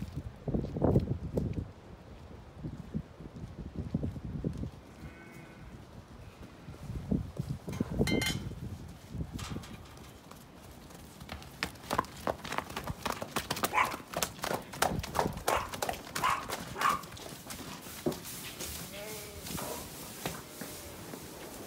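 Horses trotting across a grass paddock, their hoofbeats coming in a quick irregular run of thuds.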